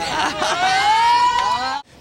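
A woman's long, high-pitched shouted call that rises slowly in pitch and is held for nearly two seconds before cutting off suddenly, over crowd chatter.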